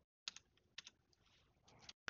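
A few faint computer keyboard keystrokes, in quick pairs about a quarter second in and near one second, then a few more near the end: a dimension value being typed into CAD software.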